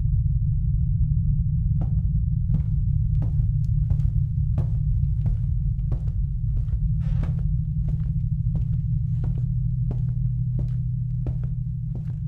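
A steady low drone with footsteps over it, starting about two seconds in and keeping an even pace of roughly two steps a second.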